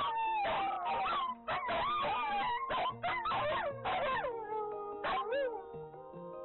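Dogs howling in long, wavering rising-and-falling howls, answering a village loudspeaker broadcast. The howls die away about five and a half seconds in, over steady background music.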